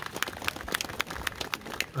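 Light, scattered clapping from a small outdoor audience: a quick, irregular patter of separate claps. A man's voice starts just at the end.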